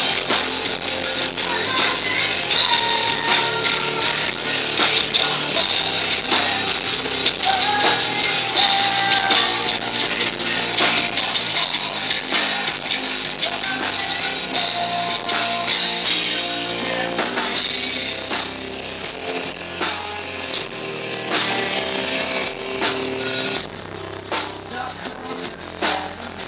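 Live heavy metal band playing an instrumental passage on distorted electric guitar, bass guitar and drum kit. About two-thirds of the way through the sound thins and drops a little in level.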